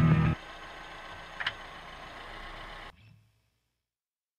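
Background music cuts off abruptly a third of a second in, leaving faint, steady outdoor background noise with one brief high chirp about a second and a half in. The noise cuts out about three seconds in, and silence follows.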